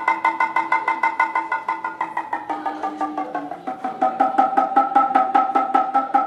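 Kotsuzumi (Japanese shoulder drum) struck rapidly by hand, about five strokes a second, each stroke ringing with a clear pitch. A little past the middle the pitch steps lower as the grip on the drum's lacing cords changes: squeezing the cords gives the high, sharp 'ta', and releasing them gives the rounder 'pon'.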